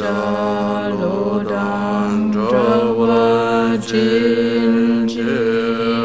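Buddhist mantra chanting on a nearly unchanging pitch, held as one long unbroken line with only slight wavers, the voice pausing for breath just before and just after.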